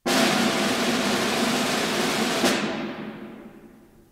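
Solo orchestral snare drum roll opening an overture. It starts suddenly, holds steady, ends on an accented stroke about two and a half seconds in, and then rings away.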